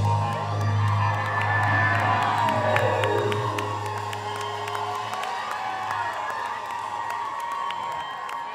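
A live rock band's final chord rings out on electric guitar and bass and dies away about five seconds in. Over it the crowd cheers and whoops, with scattered sharp claps.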